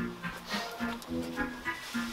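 Background music: a light, bouncy melody of short pitched notes, about four a second.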